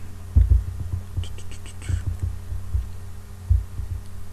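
A quick run of about six light clicks from a computer mouse scroll wheel, a little over a second in, as a list is scrolled. Under it runs a steady low electrical hum, with a few dull low thumps, the loudest about half a second in and near the end.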